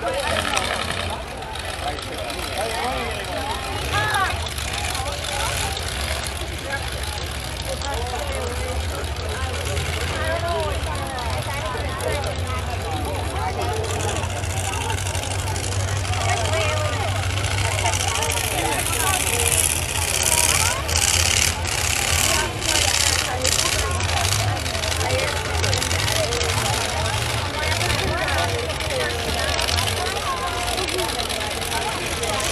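Demolition-derby pickup truck engines running with a steady low rumble as the trucks drive onto the dirt arena, over the chatter of a grandstand crowd. The noise grows brighter and crackly for a few seconds about two-thirds of the way through.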